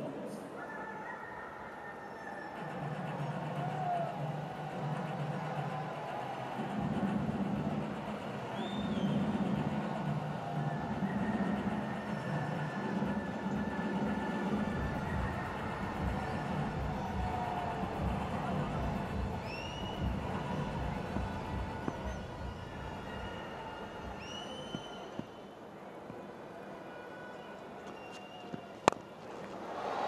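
Cricket stadium ambience: music playing over the ground's public address above a background of crowd noise, with a few short high chirps. Near the end there is a single sharp crack of the bat striking the ball.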